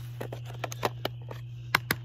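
Scattered light clicks and taps, about eight in two seconds, with two sharper ones close together near the end, over a steady low hum.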